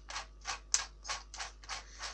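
Interskol DA-12ER cordless drill being handled, giving a quick, even run of light mechanical clicks, about four or five a second, as a ring or switch at its front is worked through its detents.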